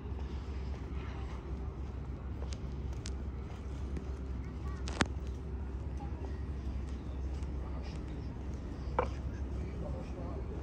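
Outdoor city ambience: a steady low hum of distant traffic with faint voices of people around. A few sharp clicks stand out, the loudest about halfway and another near the end.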